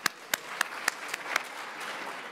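Audience applauding, with one person's hand claps close to the microphone standing out as sharp, evenly spaced strokes, about four a second, that stop near the end.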